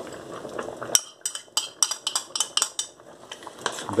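Metal spoon stirring parsley into a pot of stew, clinking against the stainless steel pot in a quick run of knocks, about five a second, starting about a second in. Before the clinks, the stew simmers softly.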